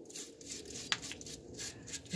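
Faint handling noises from a rusted metal brake backing plate being moved and turned by a gloved hand: light scuffs and rustling, with one sharp click a little under a second in.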